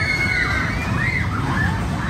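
Children squealing and shouting in short high rising-and-falling cries over a steady low rumble, with a small kiddie roller coaster running past.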